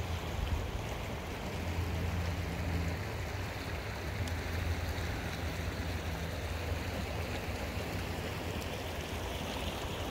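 A shallow river flowing over stones: a steady, even rush of water with a low rumble underneath.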